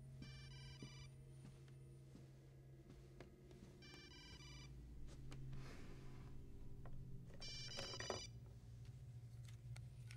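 An electronic telephone ringer trilling in three short rings, about three and a half seconds apart, faint against a low steady hum.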